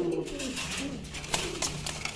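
Caged domestic pigeons cooing softly, with a few light clicks in the second half.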